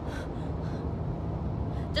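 Steady low rumble and hiss of car cabin noise inside a car.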